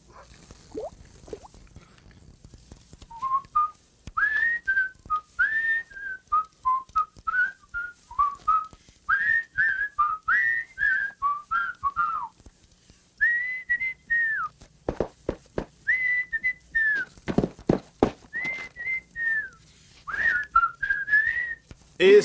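A person whistling a tune: a single line of short notes stepping up and down, with a brief break about halfway, and a few low thumps about two-thirds of the way through.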